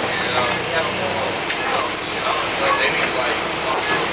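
Cabin noise inside a 2005 Gillig Phantom transit bus, its Cummins ISL diesel and Voith transmission running steadily, with people talking in the background.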